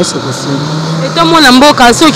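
Speech: people talking in the street, with a louder voice taking over about a second in.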